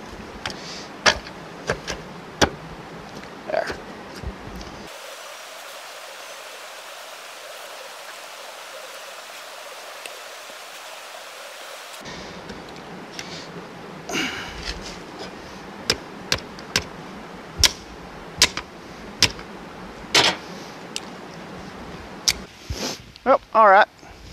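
Metal parts of a riding-lawnmower transmission clinking and knocking as it is put back together by hand, in scattered sharp strikes, with a few seconds of steady hiss partway through.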